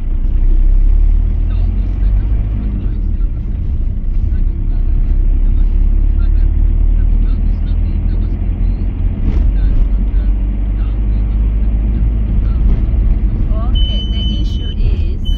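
Steady low engine and road rumble heard from inside a vehicle driving along a city street, with a short click about nine seconds in.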